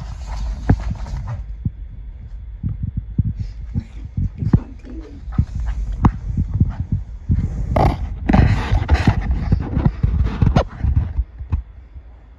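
A beaver walking on a vinyl plank floor: irregular clicks and pats of its feet and claws on the hard floor, with a denser stretch of shuffling noise about eight seconds in.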